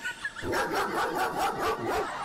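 A dog barking rapidly and repeatedly, about six or seven barks a second, starting about half a second in.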